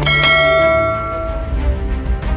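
A single bell chime struck once, ringing out and fading over about a second and a half, over background music.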